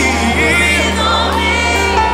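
Live gospel worship music: a choir and congregation singing over a band with sustained bass notes.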